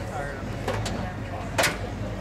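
The hood of a 1969 Dodge Coronet Super Bee being lowered and closed, with a single sharp thud about one and a half seconds in as it shuts.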